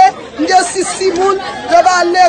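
Speech only: a person talking, with chatter behind.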